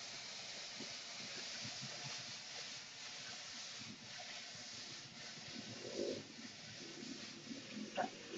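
Faint, steady sizzle of food stir-frying in a wok, with light scraping and clicking as chopsticks toss it.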